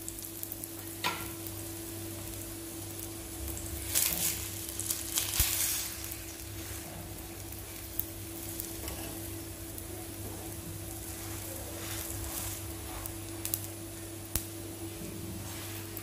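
Oil sizzling on a flat griddle (tawa) as a batter-coated flatbread fries, flaring louder for a couple of seconds about four seconds in. A few light clicks of a metal spatula against the pan.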